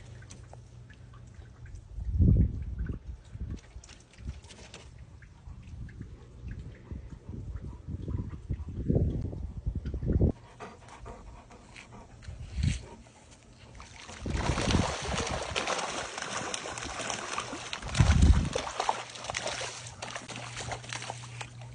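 Water sloshing and splashing as a dog swims beside a dock, turning into a steady wash of splashing for the last several seconds. A few dull thumps come through along the way.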